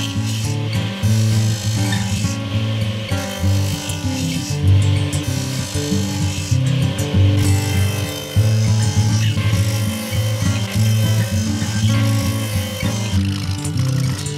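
Background music, with a power saw cutting wood faintly beneath it.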